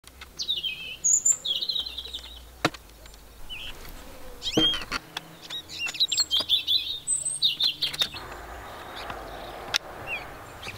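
Small songbirds chirping and singing in short repeated phrases, with a few sharp clicks and a soft rustling hiss near the end.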